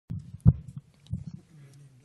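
Microphone handling noise: low thumps as a hand grips and shifts the microphone, the loudest about half a second in and another just after a second, followed by a low steady hum.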